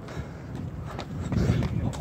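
Footsteps on pavement, about two to three a second, from a jogger with a phone in hand. A low rumble swells in the second half.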